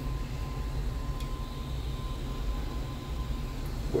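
Steady low hum with a faint high whine from a 3D printer's cooling fans running while its nozzle is hot; a light click about a second in.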